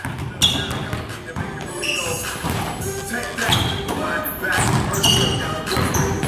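Basketball bouncing on a hardwood gym floor during a shooting drill, over background music.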